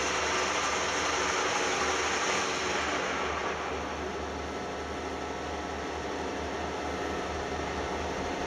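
Metal lathe running with a knurling tool's wheels pressed against the spinning workpiece: a steady whirring, grinding noise over a low motor hum, a little quieter after about three and a half seconds.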